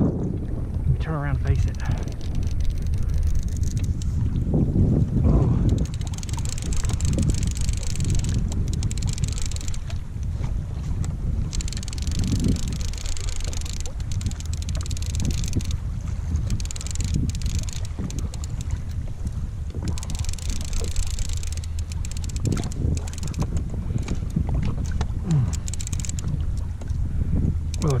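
Wind buffeting the microphone and water washing against a kayak hull at sea, with a steady low hum underneath and patches of hiss that come and go.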